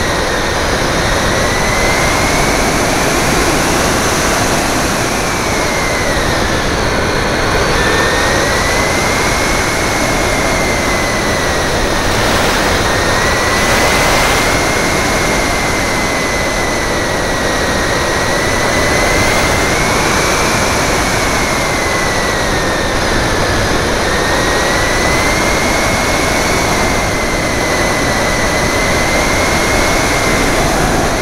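Electric RC plane (Multiplex EasyStar) heard from on board in flight: the 2700 kV brushless motor and propeller whine, its pitch wavering slowly up and down, over heavy wind rush on the camera's microphone.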